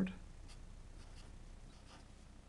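Sharpie felt-tip marker drawing lines on paper, a few short, faint strokes.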